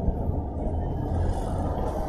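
Steady low rumbling background noise with no clear rhythm or distinct events.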